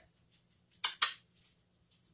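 Two quick, sharp clicks in close succession about a second in, with a few faint ticks around them.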